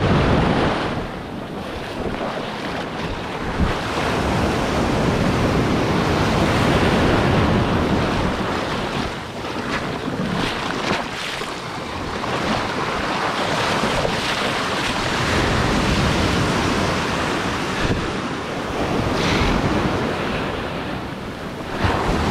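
Breaking surf washing in around a microphone held low at the water's edge, with wind buffeting the microphone. The wash swells and eases every several seconds.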